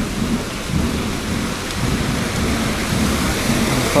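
Water from a street fountain pouring down its stepped cascade into the basin: a steady rushing splash, with a low rumble underneath.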